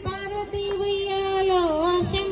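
A high female voice singing a Bathukamma folk song, holding one long note that dips in pitch near the end. Two low thumps of a beat fall about half a second apart near the start.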